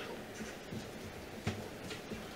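Quiet room noise with a few faint handling sounds and a soft knock about one and a half seconds in.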